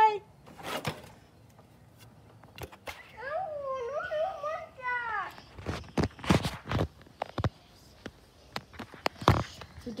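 A child's high voice calls out with a rising and falling pitch for about two seconds, followed by a run of scattered knocks and thuds.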